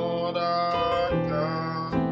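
Electronic keyboard playing sustained, richly extended chords, moving through a jazz-gospel 2-5-1 progression with about three chord changes.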